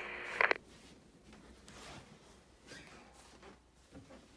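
A voice cuts off about half a second in. After it come faint rustling and soft footfalls from someone moving carefully through a quiet room.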